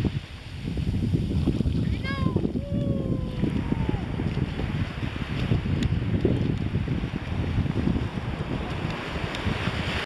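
Wind buffeting the microphone over shallow surf washing up the shore. About two seconds in, a short pitched call is heard, falling in pitch and lasting about two seconds.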